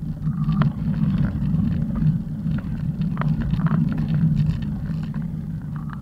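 A steady low rumble with scattered light clicks and knocks, easing slightly near the end.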